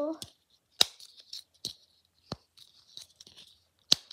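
A snowflake-shaped silicone dimple fidget popping under a thumb: about four sharp clicks a second or so apart, with soft rustling of the toy being handled between them.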